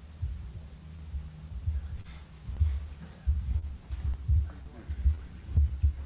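Irregular low thumps and bumps of people moving about, footsteps on the platform and people sitting down in their seats, with a faint murmur of voices.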